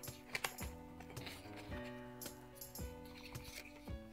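Quiet background music with a steady beat, over faint crackles of thick printed paper being creased and folded by hand.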